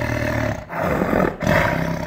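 A lion roaring, in three rough surges with brief breaks between them.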